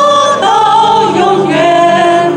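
A worship song sung by a woman leading at a microphone, with a congregation singing along, in long held notes of a slow melody.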